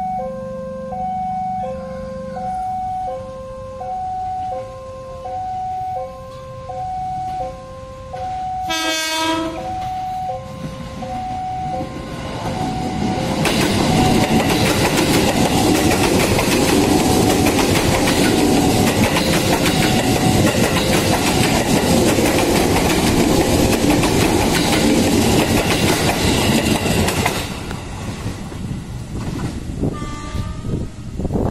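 A level-crossing warning signal sounds an alternating two-note electronic tone. About nine seconds in comes one short train horn blast. Then a KRL commuter electric train passes close by, loud for about fifteen seconds, and its sound cuts off suddenly near the end.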